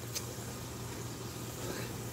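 Quiet steady low hum with faint hiss, and one faint click just after the start.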